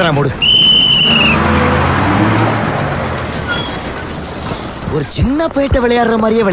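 A bus conductor's whistle blown in one long steady note, followed by the rushing noise and low hum of a moving bus, with a thin high squeal in the middle. A man's voice comes back near the end.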